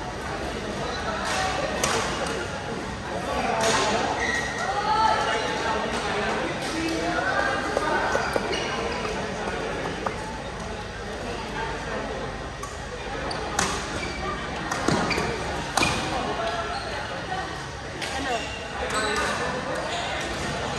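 Badminton hall: sharp racket strikes on shuttlecocks, a few at a time with pauses between, echoing in a large hall over the chatter and calls of players and spectators.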